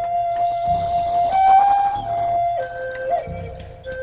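Native American-style flute playing a slow melody over a recorded rhythm track: a long held note that steps up briefly, then drops to a lower note about two and a half seconds in, with a quick grace-note flick shortly after. A low drum beat repeats about every second and a third, and a soft high hiss runs through the first half.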